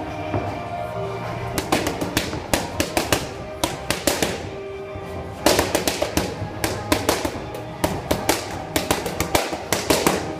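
Boxing gloves striking focus mitts: sharp slaps in quick flurries, starting about a second and a half in and coming thicker from about halfway, over background music.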